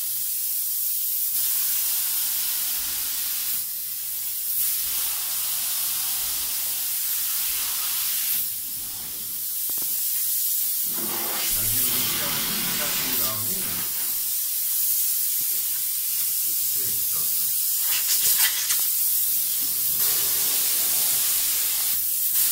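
Spray-foam insulation gun hissing as it jets polyurethane foam onto a wall, a steady hiss that surges louder at moments.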